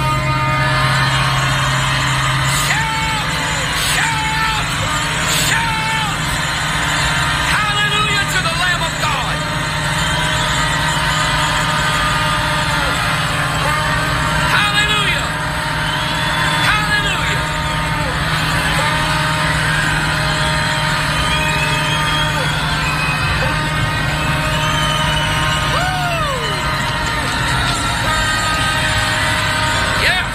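Several shofars sounding repeated overlapping blasts, some bending in pitch, over a congregation shouting and cheering. A steady low held note runs underneath.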